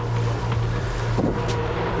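Catamaran under way in choppy water: a steady low engine drone under the wash of wind and water.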